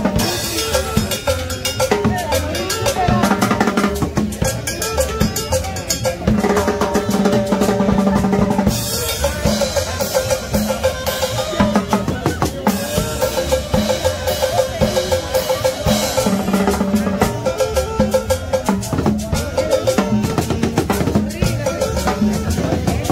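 Latin dance band playing live: drum kit, snare and cowbell keep a steady, driving dance beat under held melodic lines.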